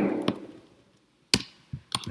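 A few separate keystrokes on a computer keyboard. The loudest is a single sharp key click a little past the middle, with lighter clicks near the end.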